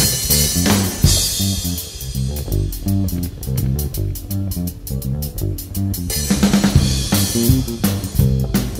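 A rock band playing an instrumental stretch of a blues number live: guitar, bass guitar and drum kit, with a steady beat of drum and cymbal strikes over moving bass notes.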